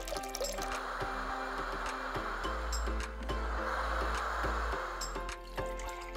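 Background music with water pouring over it in two stretches of a couple of seconds each: a thin stream running from a tap into a pot.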